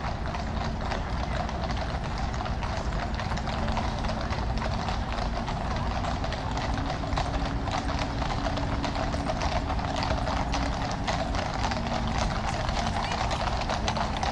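Hooves of a column of cavalry horses clip-clopping on the tarmac road, many overlapping hoofbeats in a dense, continuous patter as the column approaches.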